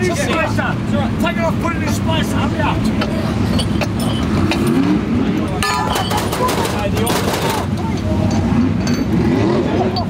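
Nearby vehicle engines running steadily, with a pitch that rises briefly twice. About six to seven and a half seconds in there is a run of sharp metallic clicks from wrench work on a sprint car's left rear wheel.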